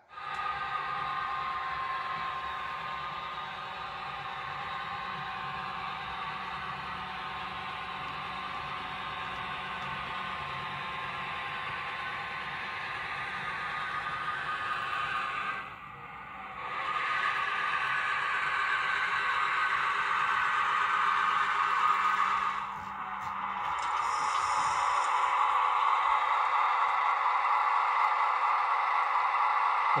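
HO-scale model diesel switcher locomotive running along the layout track pulling loaded gondolas, a steady drone. There is a brief drop in level about halfway through, and a short higher-pitched sound a little after that.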